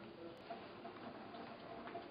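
Faint light ticking or clicking over quiet room tone.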